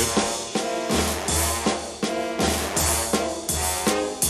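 Instrumental break in a jaunty march-style pop song: a drum kit keeps a steady beat of about two strokes a second under the band's melody, with no singing.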